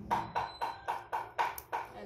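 A rapid, even series of sharp knocks or clicks, about four a second.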